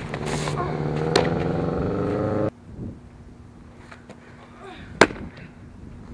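Softball pitches popping into a catcher's mitt: a crack about a second in over a steady hum, then, after the hum cuts off, a single louder crack near the end.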